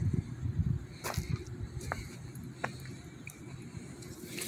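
Light footsteps on pavement, three sharp steps under an irregular low rumble.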